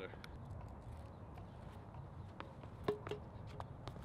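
Athletic shoes scuffing and tapping on a concrete shot put circle as a thrower turns through a rotational throw. A few sharp taps come in the last second and a half, the loudest with a brief squeak, as he drives through to the release.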